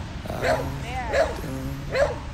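A beagle giving three short, high-pitched yips, evenly spaced, with a song playing faintly underneath.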